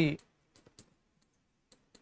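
The end of a spoken word, then a few faint, short clicks of a marker tip tapping and stroking on a whiteboard as a word is written.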